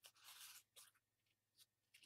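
Crumpled brown paper bag crinkling as it is handled and pressed down: a soft rustle in the first half-second, then a few faint crackles.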